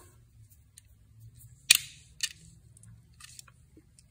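A caliper being handled on a wooden workbench: one sharp click, then a lighter click about half a second later and a few faint ticks, over a faint low hum.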